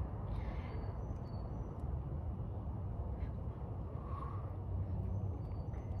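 Quiet backyard ambience: a steady low rumble, with a few faint, short high chirps scattered through it.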